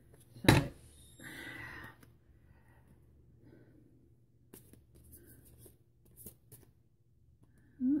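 A deck of tarot cards being handled: a sharp snap about half a second in, a short rustle of cards about a second in, then a few faint clicks of cards being flicked and moved.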